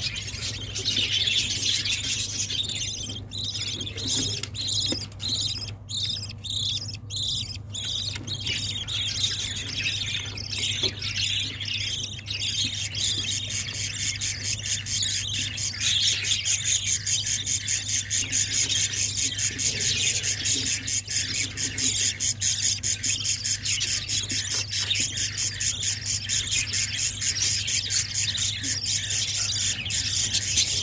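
Budgerigar chicks begging in the nest while the hen feeds them: high-pitched, rasping calls that settle about twelve seconds in into a fast, even pulsing chatter. A steady low hum lies underneath.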